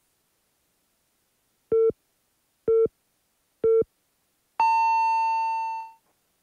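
Radio hourly time signal: three short, lower-pitched beeps a second apart, then one long, higher beep marking the hour, which fades out.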